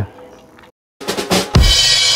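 Short drum-led intro jingle: after a brief silence, drums start about a second in, with a heavy low hit and a cymbal crash about a second and a half in.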